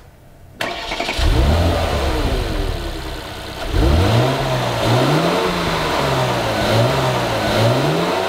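2015 Porsche Cayenne S's 3.6-litre twin-turbo V6 starting about half a second in, flaring up and settling to idle. From about four seconds in it is revved several times, each rev rising and falling in pitch.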